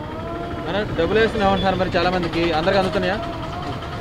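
Speech: a voice talking more quietly than the speech around it, with street traffic noise underneath.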